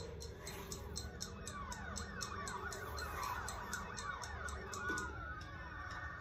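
A film-teaser soundtrack heard through a speaker: a clock-like ticking, several ticks a second, under layered swooping tones that rise and fall like sirens, over a low steady drone.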